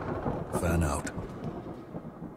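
Cartoon soundtrack playing: a dense noisy sound effect, loudest in a burst about half a second in, with a brief voice-like sound inside that burst.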